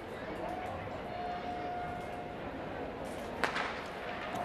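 Stadium crowd murmur while sprinters hold the set position, then a single sharp starting-gun shot about three and a half seconds in that starts the race.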